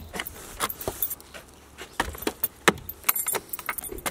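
Keys jangling on a key ring hanging from the lock of a car-roof snowboard rack, with irregular clicks and knocks as a snowboard is set into the rack and clamped.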